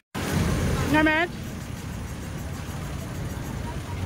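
Road traffic noise on a city street, louder for about the first second and then a steady hum. A short voice is heard about a second in.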